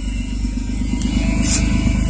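Van engine idling with loud exhaust escaping through a hole in the muffler, a fast, even pulsing throughout.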